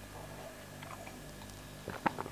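Faint swallowing of lager as a man drinks from a glass, over a steady low hum, with a few small clicks near the end.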